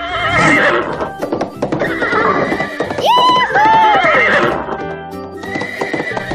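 Horse whinnying sound effect, a wavering, quivering call heard near the start and again in the middle, over background music.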